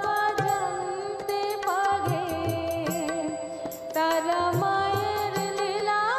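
Devotional Bengali Shyama Sangeet accompaniment: a harmonium sounds sustained reed notes and a melody over a steady drum rhythm with light percussive clicks. The passage is instrumental, between sung lines.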